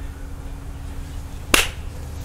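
A single sharp snap from a person's hands about three-quarters of the way in, over a steady low hum.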